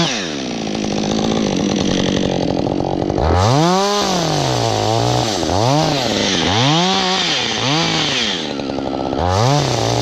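Husqvarna two-stroke chainsaw cutting into a spruce trunk. Its revs drop right at the start and hold lower for about three seconds under load. It then revs up and down several times in quick succession, with one more rise near the end.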